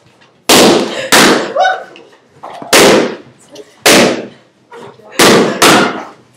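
Latex balloons being popped one after another: six loud bangs in about five seconds, irregularly spaced, with two close together near the end.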